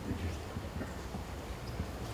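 Irregular soft knocks over a low room rumble: keystrokes on a laptop keyboard picked up by the room microphone.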